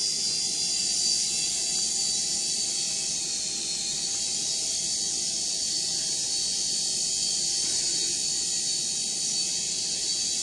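Small quadcopter drone flying, its propellers giving a steady high-pitched buzz whose pitch wavers slightly.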